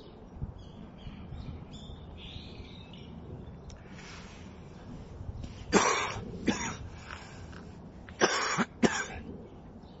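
A man coughing through a face mask into his gloved hand: a couple of sharp coughs about six seconds in, then another couple a little after eight seconds.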